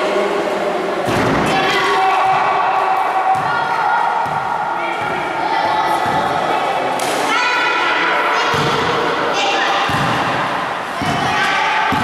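Children shouting and cheering in a gym hall, with a few thuds of a basketball bouncing and hitting the backboard.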